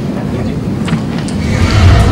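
Low rumbling microphone handling noise with a few light knocks, building to its loudest just before the end.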